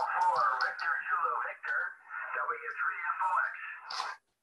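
Amateur radio voice contact heard from a portable HF transceiver's speaker: narrow, telephone-like speech typical of single-sideband reception. It cuts off suddenly at the end.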